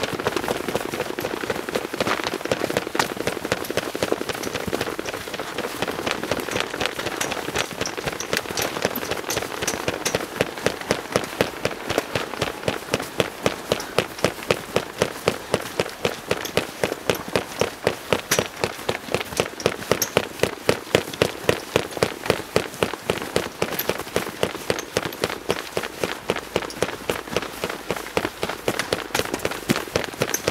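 Feet stamping and crunching in snow with costumes rustling as a group dances without music. The stamping settles into a steady beat of about two to three a second from about ten seconds in, and loosens again near the end.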